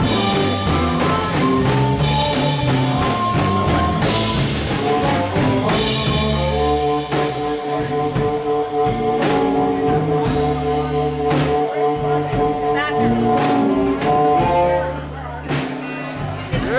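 Live electric blues band: an amplified harmonica played cupped against a handheld microphone takes a solo over electric guitar and drums, with long held notes in the middle. The harmonica phrase ends and the music drops back about a second before the end.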